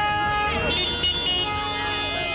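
Several car horns honking together in long, overlapping blasts in stalled traffic, a higher-pitched horn joining less than a second in.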